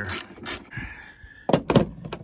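Socket ratchet turning a 10 mm bolt, its pawl clicking twice in the first half-second before stopping. About three-quarters of the way through come two louder thunks close together.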